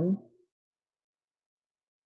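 The end of a spoken phrase in the first half-second, then complete silence.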